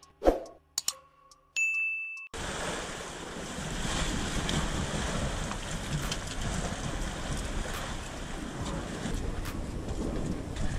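Logo-intro sound effects, a sharp whoosh and then a short high ding tone, end abruptly about two seconds in. Then wind on the microphone and surf against a rocky shore make a steady rushing noise.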